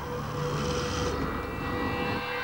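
Douglas Dakota's twin radial piston engines droning as the propeller plane flies over, with a hiss that fades about a second in.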